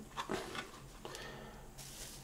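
Faint rustling of a thin plastic bag as crumbly bread ends are put into it, with a few soft rustles in the first half second and little else.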